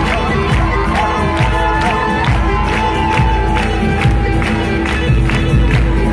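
Live band music with lute, cello, guitars and drums keeping a steady beat of about two strokes a second, under a held, gliding melody line, with a crowd cheering over it.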